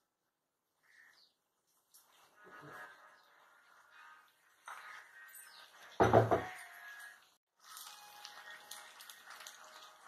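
Omelette batter frying in oil on a hot flat iron tawa, sizzling and crackling faintly in patches, with one loud thump about six seconds in.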